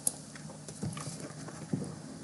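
A single short click as the browser page is refreshed, then faint room tone with a couple of soft low noises.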